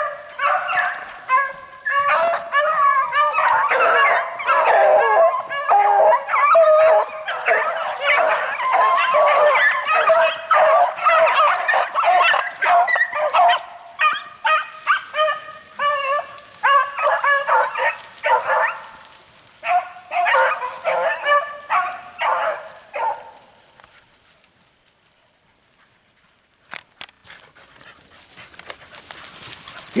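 A pack of beagles baying as they run a cottontail rabbit, many voices overlapping at first. The calls thin out into separate bawls about halfway through and stop a few seconds later.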